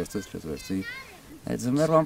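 A man speaking, with a short pause a little past a second in.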